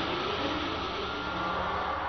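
A steady, even background hiss, with no distinct events.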